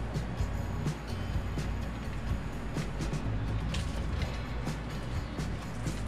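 Background music with scattered clicks and creaks as Funko Soda collectible cans are handled and worked open.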